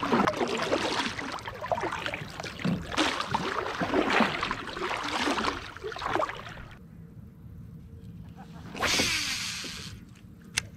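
Kayak paddle strokes splashing and dripping in calm water, repeating every second or so, until the paddling stops about seven seconds in. A short burst of noise follows near the end.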